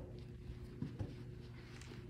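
Quiet indoor room tone with a steady low hum, and two soft thumps close together about a second in, from cheerleaders' stunt being thrown and caught.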